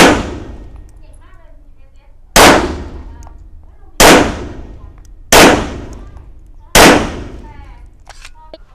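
Five shots from a Laugo Arms Alien 9 mm pistol, fired one at a time about one and a half to two and a half seconds apart. Each is a sharp crack followed by a decaying echo.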